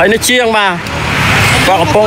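Mostly speech: a voice talking. About a second in there is a brief stretch of hiss-like noise.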